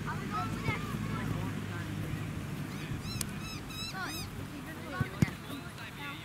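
Birds calling: a run of short chirps and squawks, busiest about three to four seconds in. Two sharp thuds come close together a little after five seconds.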